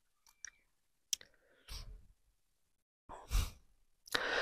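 Mostly near quiet, with a faint click about a second in and a short breath or sigh near the end.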